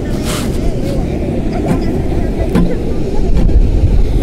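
Steady low rumble of wind and surf on the microphone, with people talking in the background; the guitar is silent.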